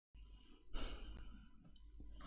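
A man's short, faint exhale or sigh into a close microphone about three-quarters of a second in, over a low steady hum.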